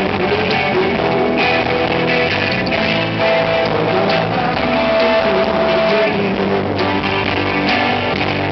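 Live rock band playing, with electric guitars to the fore. A long note is held from about three seconds in to about six.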